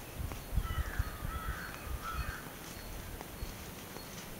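A bird calling: a string of short, harsh calls for about two seconds. Low thumps and rumble run underneath.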